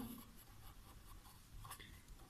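Marker pen writing on paper: faint scratching strokes.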